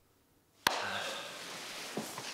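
A sharp click about two-thirds of a second in, followed by steady rustling of clothing and the sofa as a man gets up from a sofa.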